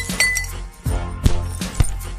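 Logo-sting sound effects: glass tinkling and clinking over music, with a deep hit a little under a second in and two more sharp strikes after it.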